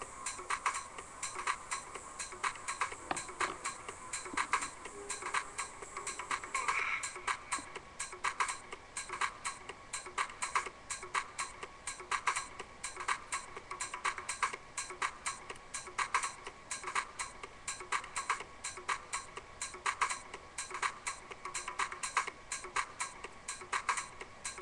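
Fast, fairly regular ticking, several sharp ticks a second, keeping on steadily.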